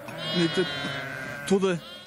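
A sheep bleating, one long wavering call lasting over a second, followed near the end by a brief bit of a man's voice.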